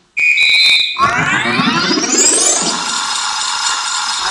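Electronic sound effect in the show's recorded music: a brief high steady beep, then about a second in a synthesizer sweep rising in pitch for about a second and a half, running into sustained music.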